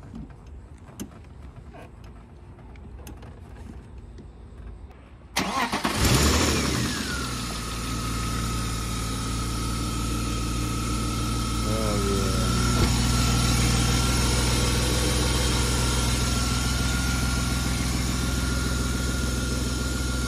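A 1994 BMW 525i's straight-six engine starting about five seconds in, catching quickly and settling into a steady idle. A high whine comes in as it starts, falls in pitch over about a second and then holds steady.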